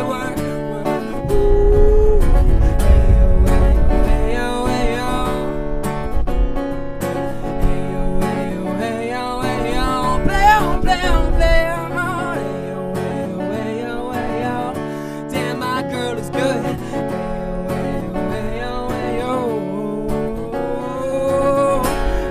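Solo acoustic guitar strummed in a slow R&B groove, with a man's wordless vocal runs and ad-libs sliding over it. The low end is heavier through the first ten seconds or so.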